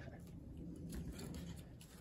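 Faint scratching and rustling with a few light clicks, from a small squirrel's claws and body moving over fabric and perches inside a wire cage.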